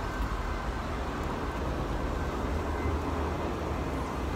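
Steady outdoor traffic noise in a car park, an even hiss over a low rumble.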